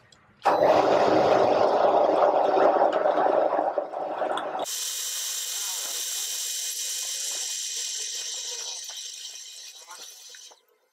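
A loud rushing noise starts about half a second in and stops abruptly a few seconds later. Then a drill bit cuts into a steel back plate on a drill press, making a quieter high hiss that fades near the end.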